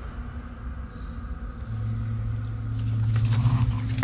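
Low, ominous droning underscore from a horror film's soundtrack, a deep sustained tone that enters about a second and a half in and swells louder towards the end.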